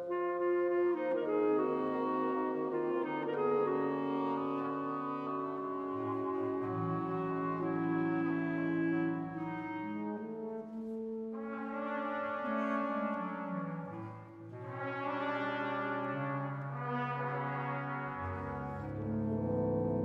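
Symphony orchestra playing slow, sustained chords, with the French horns prominent. The music swells twice in the second half.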